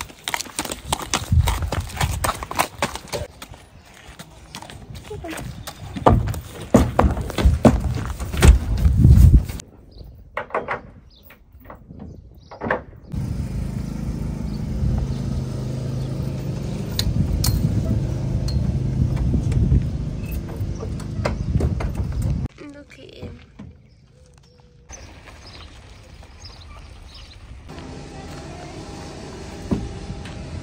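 Hooves of a Welsh pony being led on hard yard ground, clip-clopping for the first nine or so seconds. After that, a steady low rumble.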